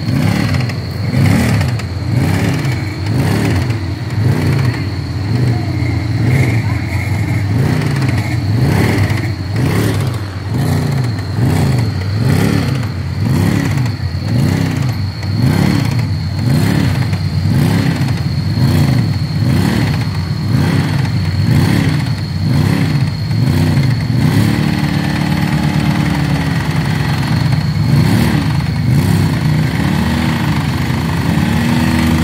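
Side-by-side UTV's engine revved up and down over and over, about once a second, as it sits stuck in a mud hole. Near the end the revving gives way to a steadier, held engine speed.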